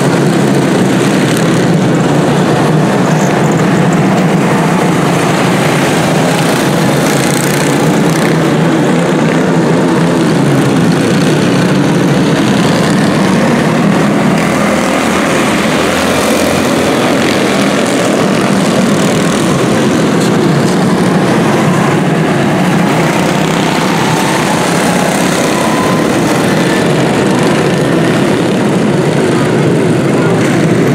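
A pack of quarter midget race cars with small single-cylinder Honda 160 four-stroke engines, running together as a loud, steady buzzing drone while they circle the track in a tight formation.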